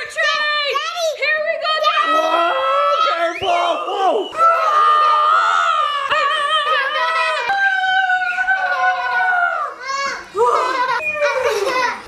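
Young children squealing and shrieking with delight, their high voices gliding up and down and held in long cries, with no clear words.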